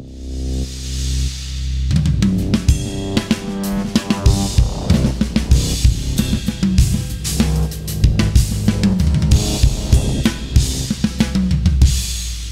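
Drum kit playing a busy groove, with bass drum, snare, hi-hat and cymbals, over held low bass notes. For the first second or so there are only the held low notes, and the drums come in about two seconds in.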